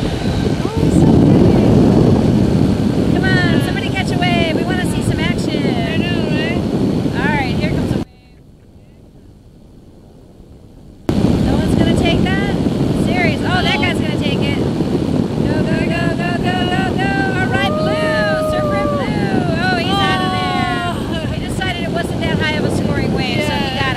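Engine and pusher propeller of a weight-shift microlight trike running steadily in cruise flight, loud and constant. The sound drops out almost completely for about three seconds partway through.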